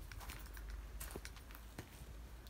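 Faint footsteps and scuffs on a concrete-tiled porch: a handful of light, irregular clicks over a low steady rumble.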